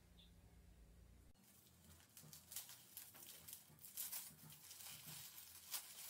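Faint rustling and crinkling of crumpled paper packing being handled and pulled open, in irregular small crackles that begin about two seconds in.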